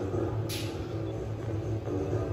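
Touch-screen slot machine's game audio playing from its cabinet speakers: a steady low rumble, with a single sharp click about half a second in.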